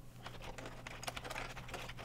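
Faint, irregular clicks of computer keyboard keys and a mouse while a file name is entered in a text box.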